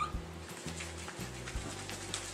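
Quiet background music carrying a low, stepping bass line, with a brief high strained cry from a man heaving up a heavy dumbbell right at the start.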